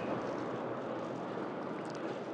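Steady outdoor background noise picked up by an open microphone, an even hiss with no voices and no distinct events.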